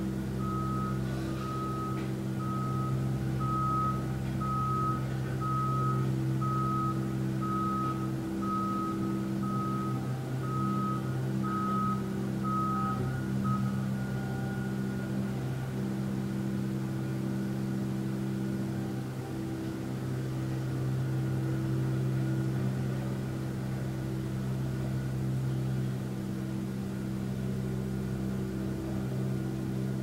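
A vehicle's reversing alarm beeping about once a second over a steady low engine hum; the beeping stops about halfway through while the hum goes on.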